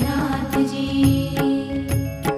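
Instrumental interlude of a Gujarati devotional bhajan in the Haveli sangeet style: a held melody note over repeated percussion strokes, with no singing.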